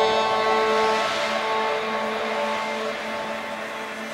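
Beatless breakdown in a dark electronic dance track: sustained synth chords under a hissing noise sweep that swells about a second in, then fades as the level drops.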